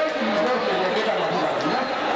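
Several voices talking over one another: crowd chatter, with no clear single speaker.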